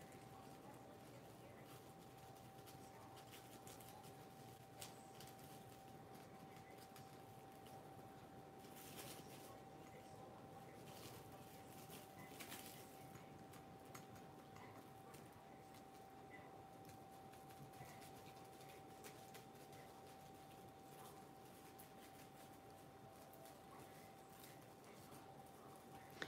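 Near silence: a few faint crinkles and rustles of clear plastic wrap and a paper napkin being pressed and smoothed by hand, over a faint steady high hum.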